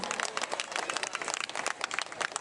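Audience applauding, many overlapping hand claps in a dense, irregular stream.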